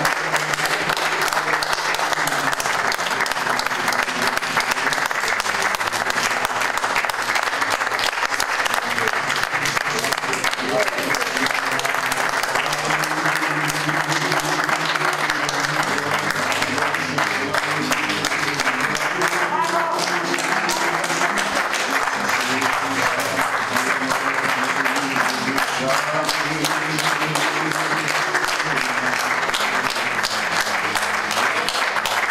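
An audience applauding steadily throughout, with music playing underneath.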